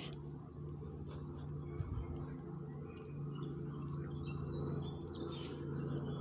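Quiet outdoor background: a low steady hum with a few faint high bird chirps in the middle and scattered light clicks from handling food.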